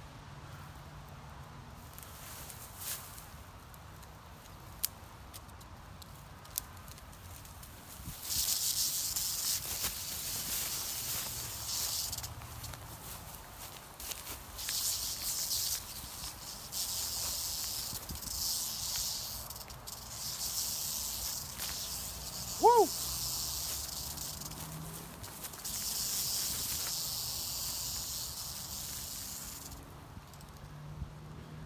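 Western diamondback rattlesnake buzzing its rattle while pinned under a stick, a defensive warning. The high buzz starts a few seconds in and comes in long bouts with short breaks. A brief squeak comes about two-thirds of the way through.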